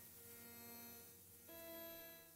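Novation Supernova II synthesizer playing quiet, sustained drone-like tones; a new chord comes in about one and a half seconds in.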